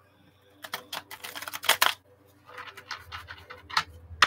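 A deck of tarot cards being shuffled by hand: two spells of quick, crisp card flicks and clicks, each lasting about a second or more, with a short pause between them.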